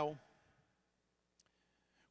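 A pause in a man's amplified speech. His voice trails off just after the start, then there is quiet room tone with a faint click about one and a half seconds in and another just before he speaks again.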